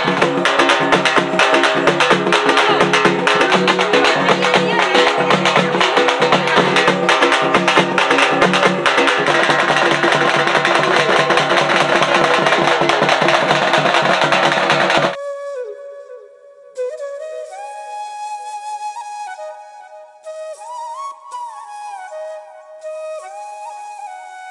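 Traditional festival drums beaten with sticks, loud and dense with a steady driving beat, stop abruptly about fifteen seconds in. A solo flute melody of held and gliding notes follows.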